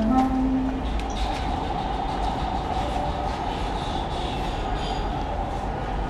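A wooden flute ends a low held note, then gives a steady breathy rushing sound with no clear pitch for several seconds, like air blown hard through the tube.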